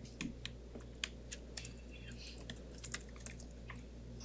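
Faint, irregular clicking of keyboard typing, over a steady low hum.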